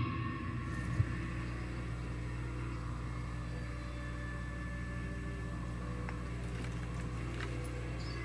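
Electric guitar rig left idling after distorted playing: the amplifier's steady hum and hiss, with a faint click about a second in.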